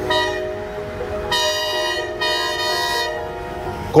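Passenger train's horn sounding a long, steady blast that grows much louder about a second in, dips briefly midway and stops near the end.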